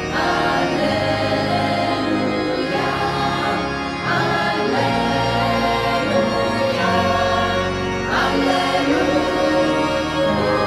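A choir singing an Italian church hymn over instrumental accompaniment with steady held bass notes.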